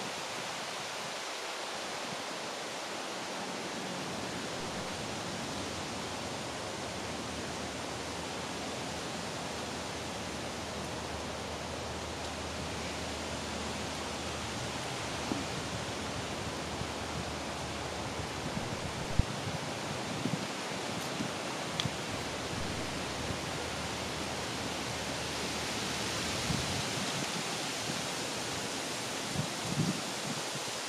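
Steady, even rushing noise throughout, with a few brief light knocks from the camera being handled.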